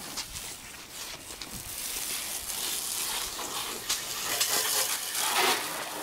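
Water from a garden hose's pistol-grip spray nozzle hissing and spattering against a car's body and glass, getting louder in the second half.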